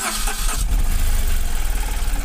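Tata Nano's two-cylinder petrol engine, heard from inside the cabin, cranking briefly and catching about half a second in, then idling steadily. It starts promptly on a replacement second-hand ECM that has cured its starting problem.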